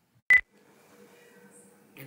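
A single very short, sharp beep-like click about a third of a second in, where the paused screen recording starts again, followed by a faint steady low hum of room and microphone noise.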